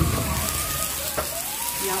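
Sliced pork belly sizzling on a tabletop grill pan, a steady hiss, with one light click about halfway through.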